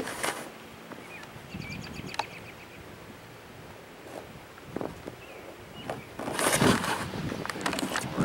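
Outdoor wind under a thunderstorm: a quiet steady rush with a few soft clicks, then a much louder gusting rush from about six seconds in.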